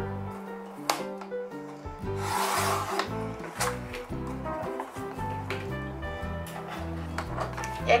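Sliding paper trimmer's blade drawn along its rail, cutting a sheet of scrapbook paper in one rasping stroke about two seconds in, with a few clicks of the paper and carriage being handled. Background music plays throughout.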